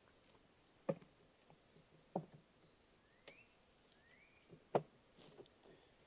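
A few soft, sharp knocks of wooden hive frames being shifted and straightened in a honey super, four in all and a second or so apart. Two short rising chirps sound faintly in the middle.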